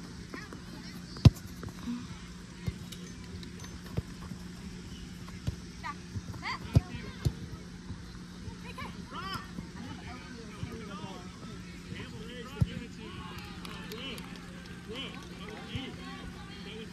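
A soccer ball kicked hard on artificial turf about a second in, then fainter kicks and thuds of the ball every few seconds, under distant shouting from players and spectators.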